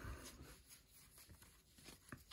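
Near silence with the faint rustle and ticking of a stack of baseball trading cards being fanned and flipped through by hand.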